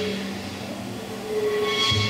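Small jazz group playing long held notes: a steady low note underneath, and a brighter horn note that swells near the end.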